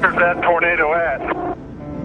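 A voice over a narrow-band two-way radio, speaking or calling out briefly and cutting off about one and a half seconds in, over steady background music that carries on alone.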